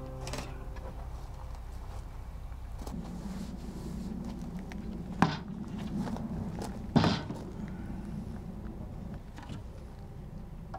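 Lumber handling on a plywood worktable: two sharp wooden knocks about five and seven seconds in, over a low steady hum.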